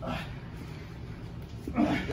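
A person grunting with strain while wrestling on the floor: a short grunt at the very start and a louder, growl-like one near the end.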